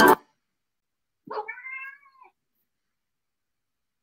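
Electronic music cuts off abruptly at the start. About a second later a cat meows once, a short call that rises and then falls in pitch, under a second long.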